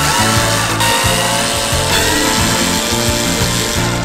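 Cordless drill driver backing screws out of a plastic cockpit shower outlet, its motor pitch falling as it slows around the start, over background music with a steady beat.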